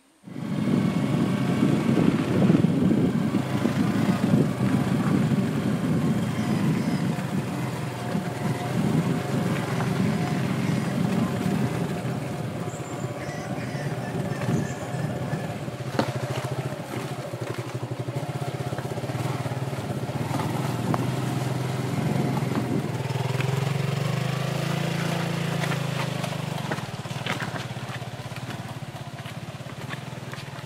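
Motorcycle engine running steadily while riding over a rough, rocky dirt trail. The sound starts abruptly about half a second in.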